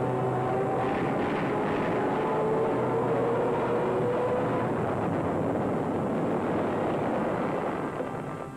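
Aircraft engine roar, steady and dense, with a held whine that rises slowly in pitch, as of a warplane in a dive.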